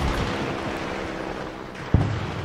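A steady rushing noise with faint held tones beneath it, slowly fading, cut off by a short sharp click near the end.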